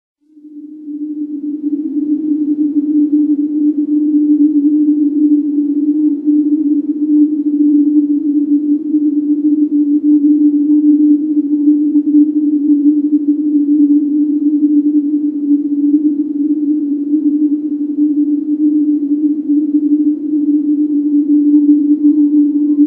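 Opening drone of an electronic music track: one sustained low tone with a grainy, hissy texture around it. It fades in over the first two seconds, then holds steady on the same pitch.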